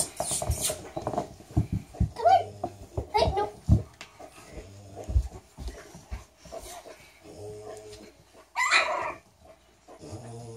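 Young Frenchton puppies (French bulldog–Boston terrier cross) give short, high-pitched squeaks and whimpers several times. Soft low thumps come in between, and there is a louder, rougher burst near the end.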